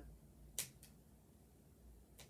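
Two short, quiet snips of small scissors cutting through the neck seam of a plush toy, close together about half a second in, over near silence.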